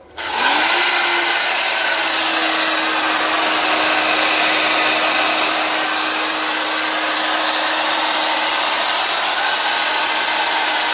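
Corded electric hand drill running with no load, powered from a 12 V battery through a car power inverter: its motor spins up in about half a second as the trigger is pulled, then runs steadily at full speed.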